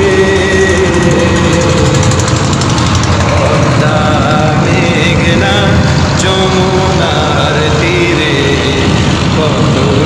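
A boat engine running steadily under men's voices singing an Islamic song in long held notes.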